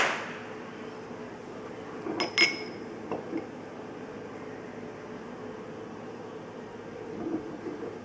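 Glass beakers clinking as their rims are brought together: two light, ringing clinks about two seconds in. A sharp knock comes right at the start, with a few faint taps later and a steady faint hum underneath.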